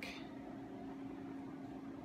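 Steady faint hum, one even tone under a low hiss, from some machine or fan running in the room.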